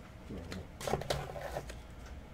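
Soft plastic clicks and rustles of trading cards in rigid plastic holders being handled and shuffled in a cardboard box.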